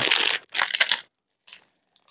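Plastic packaging crinkling in the hands: two short bursts in the first second, then one brief crackle about a second and a half in.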